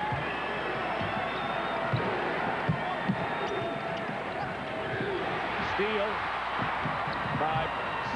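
Basketball being dribbled on a hardwood court, with a few separate bounces, over the steady noise of an arena crowd.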